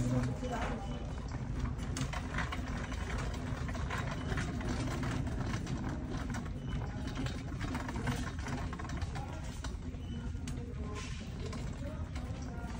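Shopping cart rolling across a store floor, its wheels and frame rattling with irregular small clicks and knocks over a steady low rumble.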